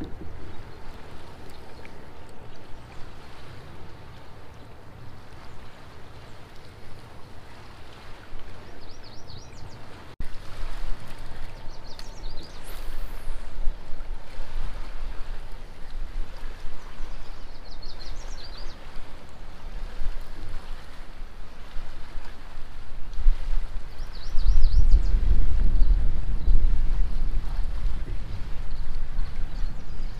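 Wind buffeting the microphone over water lapping against a plastic kayak, the rumble growing stronger about three-quarters of the way through. A few faint high chirps come and go.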